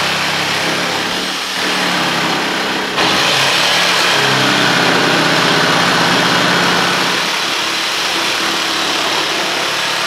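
Corded reciprocating saw (Sawzall-type) running continuously as it cuts through the weathered wooden slats of a cable spool top, dipping briefly about a second and a half in and then picking up again.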